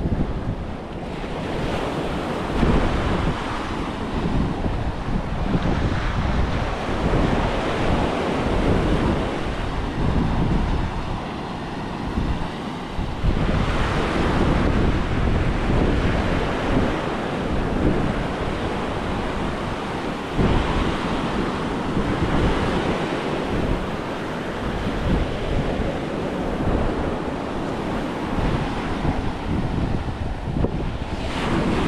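Atlantic surf breaking close by and washing up a sandy beach, swelling every few seconds as waves come in. Wind buffets the microphone underneath.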